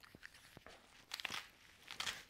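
Faint rustling and a few small clicks as a tourniquet's strap is handled and tightened around a thigh, with a short burst of scraping about a second in.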